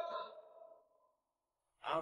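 The fading tail of a man's long drawn-out shout, then near silence. A man's voice starts speaking again near the end.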